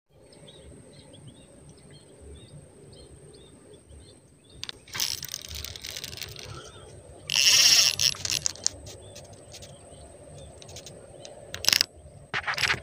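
Faint bird chirps in the first few seconds. Then rod and reel handling noise: a rustling burst about five seconds in, and a louder, harsh scraping burst about seven and a half seconds in, followed by scattered clicks.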